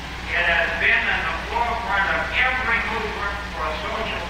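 Indistinct speech over a steady low electrical hum in the recording.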